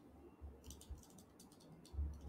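A quick run of light, sharp clicks and a few low bumps from a webcam computer being handled and adjusted, in an otherwise near-silent room.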